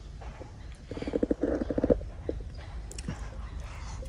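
A short voiced sound from the man in the middle, then a few sharp mouth clicks as he takes a spoonful of braised pork belly and cabbage into his mouth.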